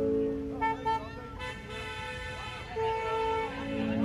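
Car horns honking in a drive-by procession, with a short toot near the start and a longer held one near the end, over voices and faint background music.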